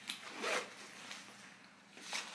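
Zipper on a fabric diaper bag pocket being pulled, in a few short rasps, the loudest about half a second in.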